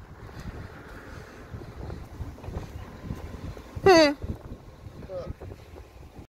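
Wind buffeting a phone microphone, with a short loud voice call about four seconds in that wavers and falls in pitch.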